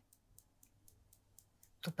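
Faint, light clicking at about four clicks a second, fairly even, in an otherwise quiet stretch.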